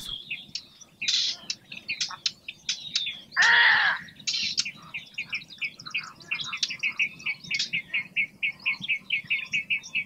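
Small birds chirping and twittering throughout, with a fast, even run of repeated chirps (about five a second) in the second half. One loud pitched call about three and a half seconds in stands out above the rest.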